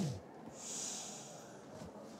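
A soft low thump at the very start, then a short breathy hiss through a person's nose, like a sniff, lasting just under a second.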